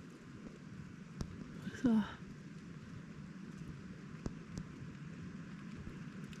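Sparse raindrops ticking one at a time on a wet nylon tent fly over a steady faint hiss, heard from inside the tent. A brief vocal sound about two seconds in.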